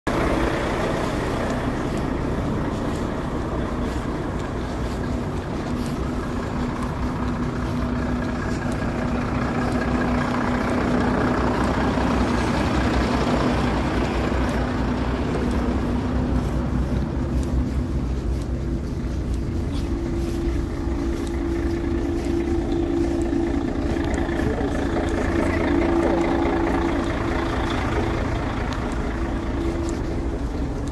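Heavy lorries' diesel engines idling, a continuous low drone with a steady hum in it that sits higher in the second half.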